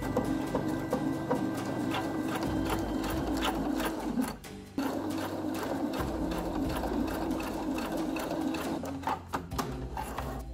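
Electric sewing machine stitching through thick terry towelling, running steadily, stopping briefly about halfway through and then running again.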